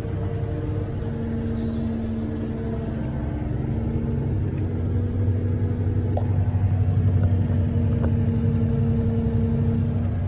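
An engine running steadily with a low hum, heard from inside a vehicle cab; it grows a little louder in the second half.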